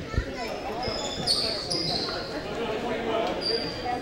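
Gym ambience on a hardwood basketball court during a stoppage: a dull bounce-like thud just after the start, distant players' voices murmuring in the echoing hall, and a few short high-pitched squeaks, loudest about a second and a half in.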